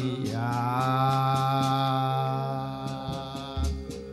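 A male voice holds one long sung note in Javanese chanted style, a dalang's suluk, over a gamelan accompaniment. The note fades about three seconds in.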